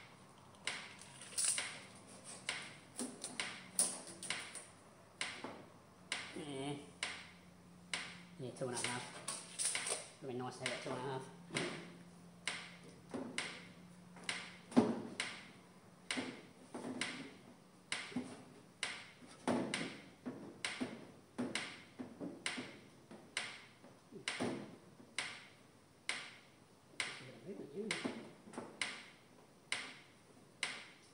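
Electric fence pulsing: a steady run of sharp, evenly spaced ticks, about one and a half a second, with a low hum under the first half.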